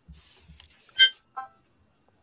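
A single short, bright ding about a second in, followed by a fainter, lower tone. It is a chime sounded as a signal for a viewer's tip, which the others on the call say did not come through to them.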